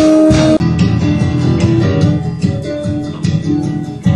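Live band music with guitar and bass. A held note breaks off about half a second in, and the plucked guitar part carries on.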